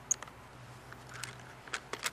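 Faint, scattered metallic clicks of two adjustable wrenches working the nuts of a bicycle seat's clamshell mount as they are tightened, over a low steady hum.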